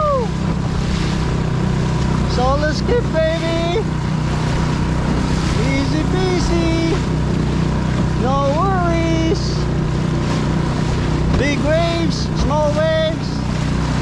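Small outboard motor driving a solo skiff across open sea, running steadily, with wind and water noise. Over it a man's voice, without clear words, rises and falls in four drawn-out phrases.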